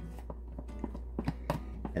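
A handful of light clicks and taps from a spatula scraping Cool Whip out of its plastic tub into a glass bowl, over soft background music.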